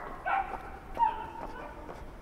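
A dog giving a few short barks, then a drawn-out whine about a second in, with footsteps.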